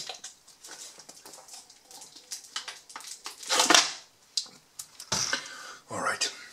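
A man drinking water from a plastic bottle: faint swallowing, and the plastic crinkling, loudest about three and a half seconds in. About five seconds in, a thump as the bottle is set down on the wooden table.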